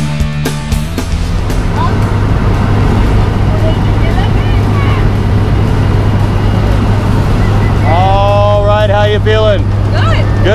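Loud, steady drone of a skydiving plane's engines and propellers heard inside the cabin while it climbs to jump altitude. A rock music track cuts out about a second in, and a voice speaks over the drone near the end.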